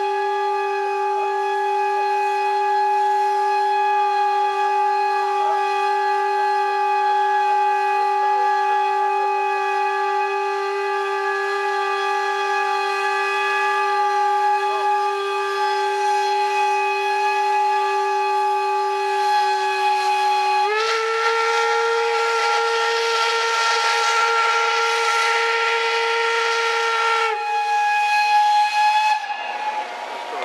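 Steam locomotive whistle blown in one long continuous blast. About two-thirds of the way through, the pitch steps up and a loud hiss of escaping steam joins it. Shortly before the end, the pitch drops back, and then the whistle cuts off.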